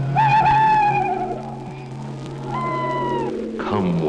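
Eerie high wailing cries on a horror film trailer's soundtrack, over a steady low drone. The first wail is long and wavering; the second comes about two and a half seconds in, shorter and falling away at its end.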